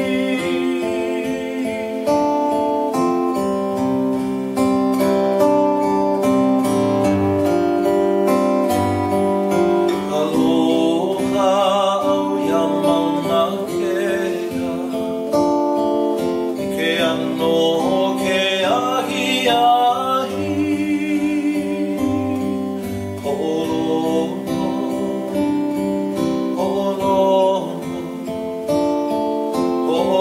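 A man singing with a wavering vibrato while strumming a steel-string acoustic guitar.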